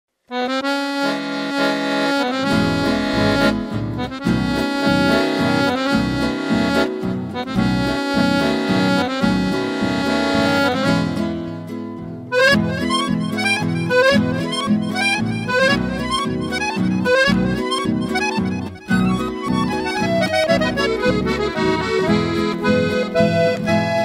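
Instrumental introduction of a song: an accordion plays the melody over an acoustic guitar's steady bass rhythm. The accordion holds long notes at first, then about halfway through switches to a quicker run of short notes.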